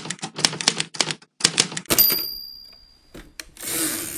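Typewriter keystrokes clacking in quick succession, about five a second, then the typewriter's bell dinging once about two seconds in and ringing away. Near the end comes a longer rushing slide, like the carriage being returned.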